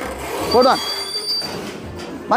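Metal gate scraping with a high, steady squeal in the middle as it is pushed.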